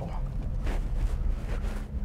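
Lotus Evora's Toyota-sourced 3.5-litre V6 running at low revs, heard from inside the cabin with road noise, while the automatic gearbox sits in first gear.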